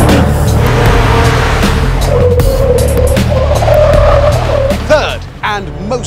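A car driven hard and sliding, its tyres squealing in a wavering tone from about two seconds in until just before five seconds. The noise of the car and tyres dominates, with music underneath.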